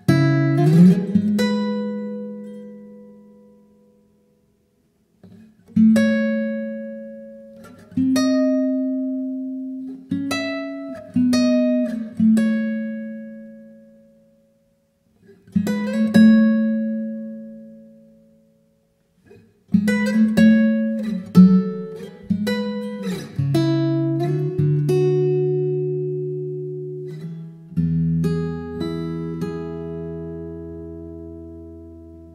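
Solo acoustic guitar playing a slow fingerpicked instrumental: phrases of plucked notes and chords left to ring and die away, with short pauses between them. About two-thirds of the way in the playing grows busier, settling into held chords over a low bass note near the end.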